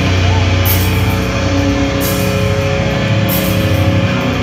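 Live heavy rock band playing loud, with distorted electric guitars and bass over a drum kit. Bright cymbal crashes recur about every second and a half.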